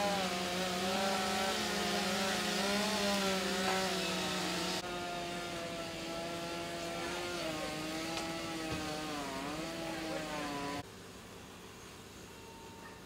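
Gas-powered chainsaw running hard, its engine pitch wavering up and down as the chain bites and frees, cutting into a burning house's roof for ventilation. It starts abruptly and cuts off suddenly about a second before the end.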